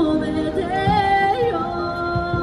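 A singer's voice amplified through a microphone, holding a long wavering note with vibrato through the middle, over a steady sustained accompaniment.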